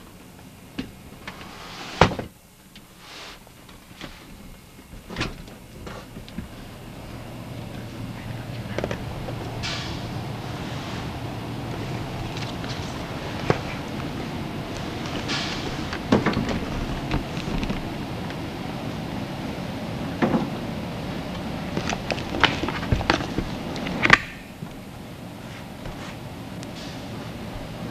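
Irregular knocks, bumps and rustling of a person climbing up and out through the cramped hatch of a wooden capsule mockup with metal shingles. A sharp knock comes about two seconds in and another near the end.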